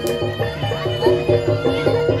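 Live gamelan-style accompaniment for a kuda lumping (jaranan) horse dance: a fast, even pattern of pitched gong-chime notes over a pulsing drum beat. There is one sharp crack just after the start.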